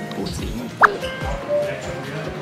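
Background music with a steady low beat, and one short, sharp rising blip just before a second in.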